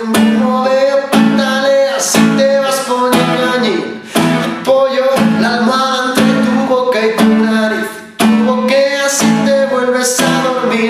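Nylon-string classical guitar strummed in a steady rhythm, barre chords with a strong stroke about once a second, with a man singing along.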